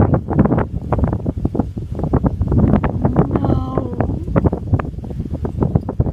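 Wind buffeting the microphone: a loud, ragged rumble with irregular gusts, and a brief pitched sound about three and a half seconds in.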